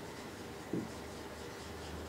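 Felt-tip marker writing on a whiteboard: a few faint strokes, the clearest about three-quarters of a second in.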